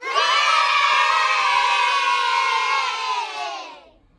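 A crowd of many voices cheering and shouting together. It starts suddenly and fades out over the last second.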